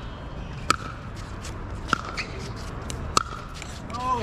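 Pickleball rally: three sharp paddle-on-ball pops about a second and a quarter apart, with fainter clicks and shoe scuffs on the court between them.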